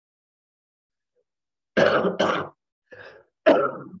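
A person coughs twice in quick succession, then clears their throat.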